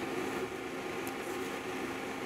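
NuWave induction cooktop running on its sear setting: a steady hum of a few tones over a fan-like hiss.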